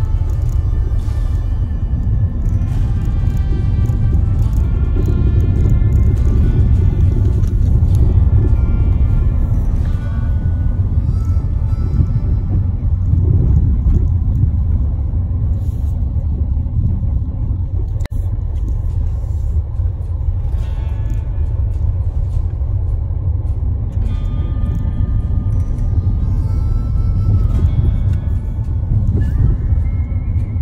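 Continuous low rumble of a car driving over a bumpy dirt road, heard from inside the cabin, with music over it.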